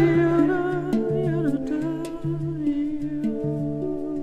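A hang (handpan) played with the fingers in a repeating pattern of ringing steel notes, over a low hummed voice drone. About a second in, a thin whistling overtone line wavers briefly above the drone, as in overtone singing.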